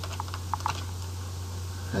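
A handful of keystrokes on a computer keyboard in the first second, typing a line of code, over a steady low hum.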